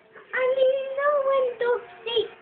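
A young girl singing in a high voice, with a long held note starting about a third of a second in and a shorter one near the end.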